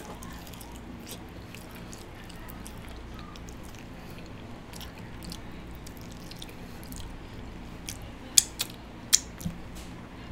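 Close-up eating sounds: a chicken wing being bitten and chewed, with faint wet mouth noises over a steady low hum. A few sharp clicks stand out near the end.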